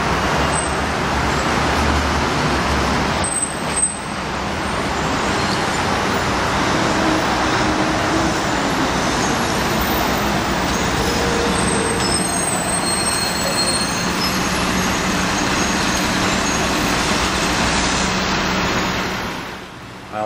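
Loud, steady street traffic: cars, taxis and buses running by in a continuous rush of engines and tyres, with a brief dip about four seconds in. It stops abruptly near the end.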